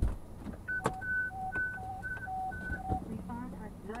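Fire dispatch alert tones over a radio scanner: a high and a low tone alternating, about an octave apart, from about a second in until about three seconds in, the hi-lo signal that announces a dispatch. A thump at the very start.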